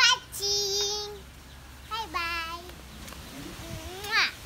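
A young boy singing two long held notes, the second about two seconds after the first.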